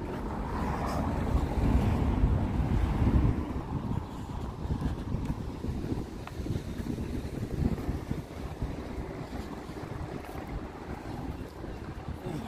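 Wind buffeting the microphone, a rough, uneven rumble that is loudest for the first three seconds or so and then eases off, over faint outdoor background.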